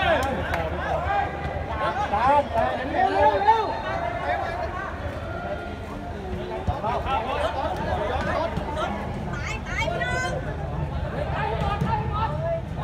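Crowd of spectators chattering and shouting over one another, busiest in the first few seconds and again near the end.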